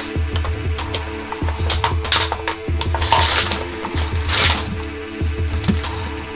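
Crinkling and tearing of Yu-Gi-Oh! card-pack foil and plastic packaging in several short bursts, the loudest about three seconds in, with small clicks of cards being handled. Background music with a steady beat plays under it.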